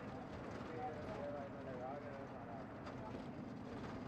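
Faint, indistinct voices murmuring with no clear words, over a steady noisy background.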